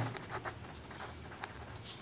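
Pen writing on paper, faint short scratching strokes as a word is written out by hand.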